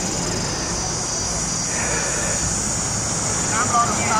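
Steady drone of car engines running slowly on a road, with a steady high-pitched hiss or buzz above it. Voices come in near the end.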